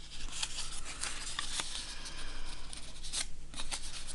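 Square of origami paper rustling and crinkling under the fingers as its creases are opened and pressed back on themselves: a steady run of small crackles and rubs with a brief lull past the middle.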